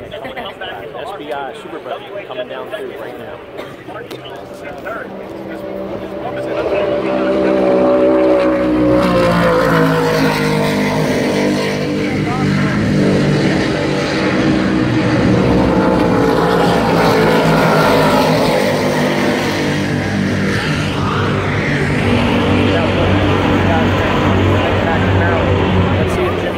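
Offshore race boat engines running at speed: quiet at first, they grow loud about six seconds in, fall in pitch as the boat passes and then stay loud.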